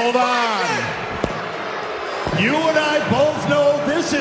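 A man talking into a handheld microphone over an arena's PA, with crowd noise filling a pause of about a second and a half before he speaks again. A short thud comes about a second in.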